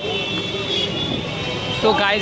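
Busy street din of traffic and crowd, a dense steady noise with a high thin tone running through most of it. A voice starts up near the end.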